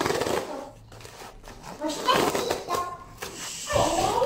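Hands handling a cardboard shipping box, with the box's tear strip ripping open near the end.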